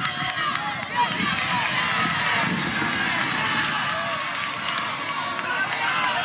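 Many overlapping voices shouting during an outdoor football match, as players and onlookers call out while play runs on, with a sharp knock about a second in.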